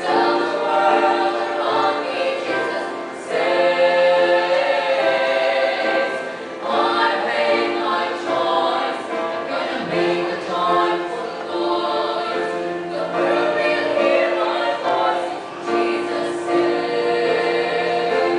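Female choir singing a gospel song in harmony, phrase after phrase, over long sustained low notes.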